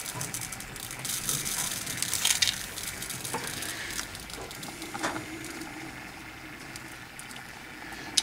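Chunky glitter being scooped with a plastic spoon and sprinkled onto an epoxy-coated tumbler: a soft hiss with scattered faint ticks as flakes land on the cup and the paper beneath.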